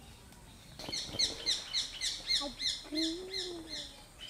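A bird calling a rapid series of high, downward-slurred notes, about four a second, for nearly three seconds.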